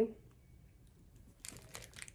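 Clear plastic wrap on a handbag's handles crinkling in a quick run of short crackles as the bag is handled, starting about one and a half seconds in.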